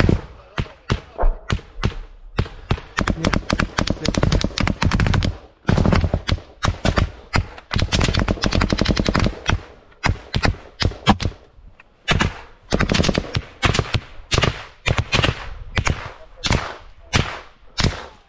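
Heavy automatic small-arms fire: rapid bursts and single shots crack one after another almost without a break. It is densest about three to five seconds in and again around eight to nine seconds in.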